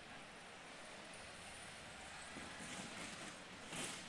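Faint, steady background noise of a large hall during a robot match, growing a little louder and busier in the second half with some faint irregular knocks.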